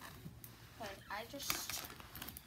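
A person's quiet, unclear voice, with a few brief knocks or rustles of handling.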